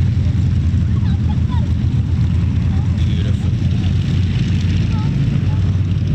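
Avro Lancaster's four Rolls-Royce Merlin piston engines running, a loud, steady deep drone.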